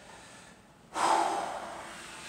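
A man's forceful breath out, starting suddenly about halfway through and tailing off over about half a second.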